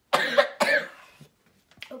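A boy coughing twice in quick succession, his throat irritated from swallowing a shot of straight vinegar.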